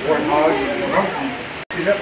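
African penguins calling, a few pitched calls in the first second or so. The sound cuts out briefly near the end.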